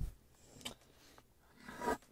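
Faint handling noises from a wooden advent calendar drawer as an ornament is worked out of it: a short click at the start, a small tick a little after half a second in, and a soft rub near the end.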